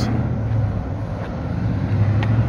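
Steady low hum of a motor vehicle engine over outdoor traffic noise, with some wind on the microphone.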